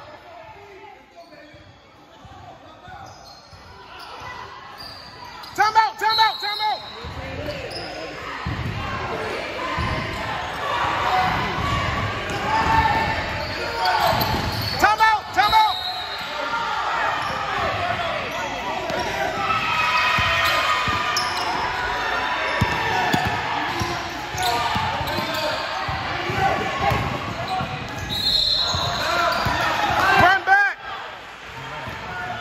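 A basketball being dribbled on a gym court, with sneaker squeaks and the voices of players and spectators echoing in the large hall. It is quiet at first and gets busy from about a quarter of the way in.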